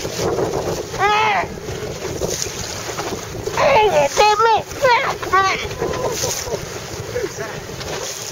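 Wind buffeting the microphone over the rush of choppy water. A person's short exclamations and laughter break in once about a second in, then in a quick run between about three and a half and five and a half seconds.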